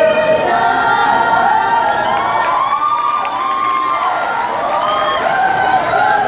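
An a cappella vocal group of women's and men's voices singing in harmony, several held parts with a melody line gliding up and down.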